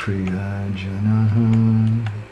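A man chanting Sanskrit invocation prayers to Krishna and Chaitanya, drawing out one long low note that steps up a little just past halfway through.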